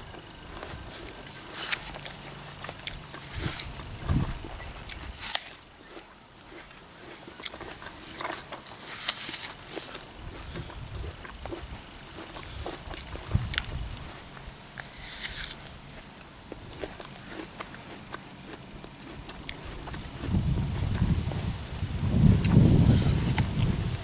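Apple being chewed close to the microphone: crisp crunching with small mouth clicks and smacks. Grasshoppers chirp in a high hiss that comes and goes, and a low rumble rises near the end.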